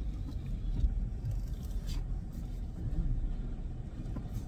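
Car engine idling: a steady low rumble heard from inside the cabin, with a faint click or two.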